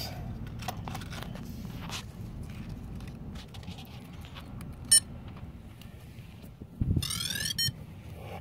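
Small clicks of handling and a battery connector, one short electronic beep about five seconds in, then near the end a quick run of rising electronic chirps and a beep as the Blade 200 QX quadcopter powers up on a freshly connected battery.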